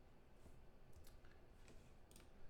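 Near silence with a few faint clicks from a trading card being handled.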